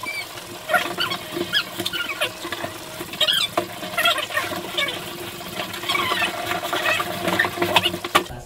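Fast-forwarded audio: voices sped up into short, high, squeaky chatter, with the rustle and knocks of a cardboard box being opened and its contents lifted out.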